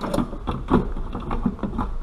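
Stock plastic airbox of a Ford Focus ST225 being wiggled and worked loose by hand, knocking and scraping against the surrounding engine-bay parts in a string of irregular clicks and rattles.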